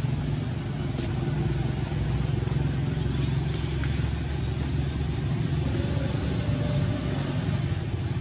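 Steady low rumble of a motor vehicle engine running.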